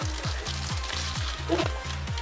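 Background music with a steady bass-and-kick beat, about four strokes a second, under the crackle of a plastic candy pouch being torn open by hand.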